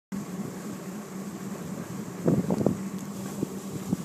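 Boat engine idling with a steady low hum, and wind buffeting the microphone; a few brief louder sounds come about two and a half seconds in.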